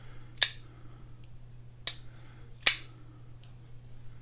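Titanium frame-lock folding knife (Brian Brown Knives Raptor 2) being flicked open and shut, giving three sharp clicks as the blade snaps past the detent and against its stops, then a faint tick near the end. The pivot and detent ball are freshly oiled, and the blade is closing better.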